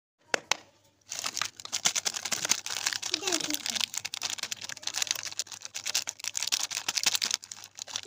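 Plastic wrapper of a wafer-roll candy pack crinkling and crackling continuously as it is handled in the hands, after two sharp clicks at the very start.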